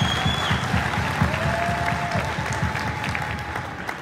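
Audience applauding, many hands clapping at once, with a couple of long held calls rising over the clapping; the applause thins out near the end.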